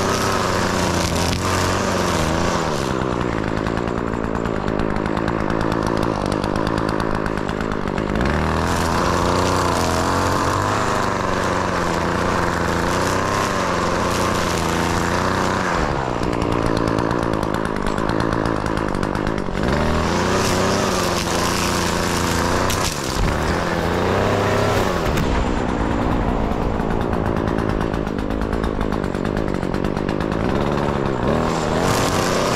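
String trimmer running while cutting grass, its engine pitch rising and falling several times as it works.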